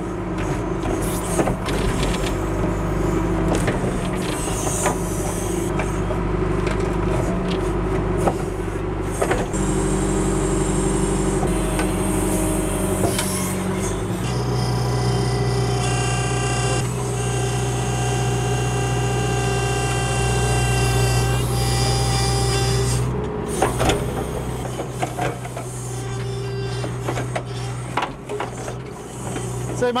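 John Deere 310SE backhoe's diesel engine running under load as it works a loosened maple stump, with scattered knocks from the bucket and roots. About halfway through the engine note shifts and a steady high hydraulic whine runs for several seconds, then fades.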